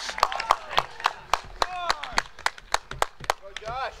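Scattered hand clapping from a small group of spectators, irregular claps throughout and thicker in the first two seconds, with a few voices calling out between them.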